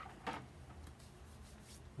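Faint clicks and scrapes of a screwdriver and hands working the plastic air box and casing of a Honda EU22i inverter generator, over a low steady hum.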